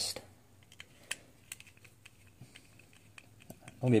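Scattered light clicks and ticks of a small screwdriver and hard plastic being handled, as the screws holding a die-cast model car to its black plastic display base are worked loose.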